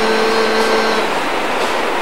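A man's amplified devotional chant holding one steady note, which fades out about a second in and leaves a steady hiss.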